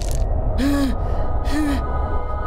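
A cartoon character's voice making short breathy vocal sounds, each rising and falling in pitch, about one a second, over a steady low rumble.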